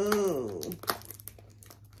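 A short stretch of a woman's voice, then faint, scattered crinkling and clicking of the cellophane wrap on a perfume box being picked at and torn open by hand.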